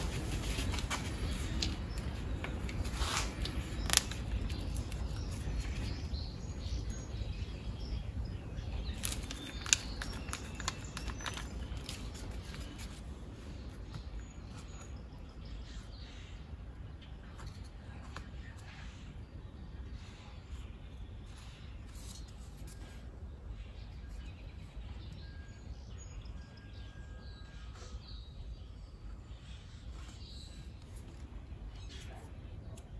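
Small workbench handling sounds as two-part epoxy is mixed and spread with a wooden stick onto a metal dome light base: light scraping and tapping, with a couple of sharper clicks in the first ten seconds, over a low steady hum. A few faint high chirps come through now and then.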